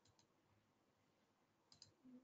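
Near silence, broken by a couple of faint clicks just after the start and another pair near the end.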